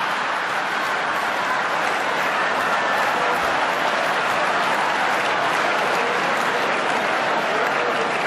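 Large theatre audience applauding and laughing, a steady dense clapping in reaction to a joke.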